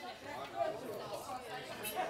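Background chatter: several people talking at once, overlapping voices with no single clear speaker.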